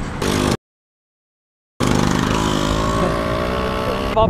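Kawasaki Z250 motorcycle engine pulling away, its pitch rising steadily and then levelling off. The sound drops out to complete silence for about a second shortly after the start.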